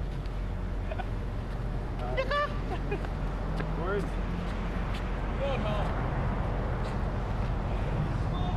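Steady rumble of road traffic, growing louder toward the end as vehicles pass. Over it come a few short vocal whoops and calls, the clearest about two seconds in.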